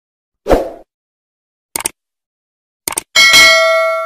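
A short thud, then two pairs of quick clicks, then a bell struck once near the end, ringing out with several steady tones and slowly fading.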